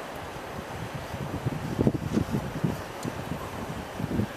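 Steady road and wind noise from a moving car, with irregular low wind buffets on the microphone in the middle.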